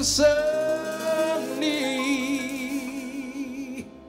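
A jazz quartet's closing chord of a slow ballad. A cymbal crash and a short low bass note open it, then the piano and a long held sung note with vibrato ring out together and stop suddenly shortly before the end.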